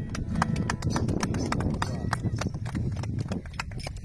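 A quick, even run of sharp taps, about six a second, with people talking low underneath.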